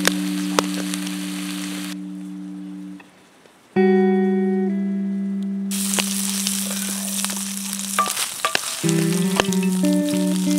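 Bacon frying in a cast iron skillet, sizzling with scattered crackles, under background music of long held chords. The music drops out briefly about three seconds in, and the sizzling is strongest in the second half.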